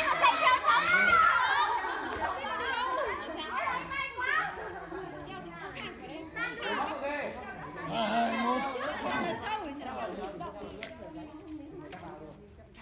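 Several people chattering and calling out at once, women's and children's voices overlapping. It is loudest in the first couple of seconds, then tapers off.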